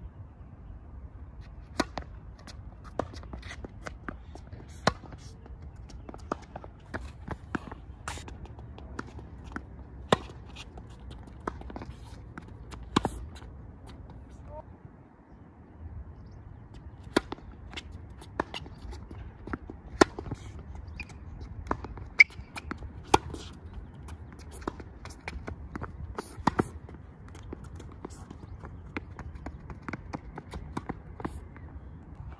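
Tennis balls struck by racquets and bouncing on an outdoor hard court during a baseline rally: sharp cracks at irregular intervals, often about a second apart, with shoes scuffing on the court in between.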